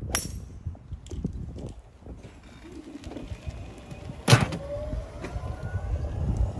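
A golf club striking a ball off the tee: one sharp crack with a brief high ring right at the start. About four seconds later comes a single louder sharp knock.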